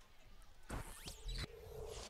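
A short electronic sound effect: a sudden whoosh with a falling sweep about two-thirds of a second in, then a steady low tone held for about half a second.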